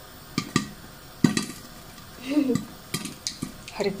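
Popcorn kernels popping in a lidded frying pan coated with sugar syrup: a handful of scattered sharp pops against a faint sizzle. The popping is sparse, which the cook blames on sugar that would not melt properly.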